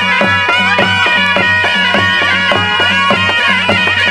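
Nepali panche baja wedding band playing: shehnai pipes carry an ornamented melody over a steady low drone, with a drum keeping a fast, even beat of about three to four strokes a second.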